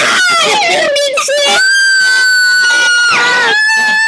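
A child screaming: wavering shrieks for about the first second and a half, then a long high shriek held on one pitch, a short break, and another held shriek near the end.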